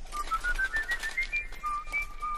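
Whistled melody: a run of quick short notes climbing step by step, a held high note, then a drop to a lower note near the end.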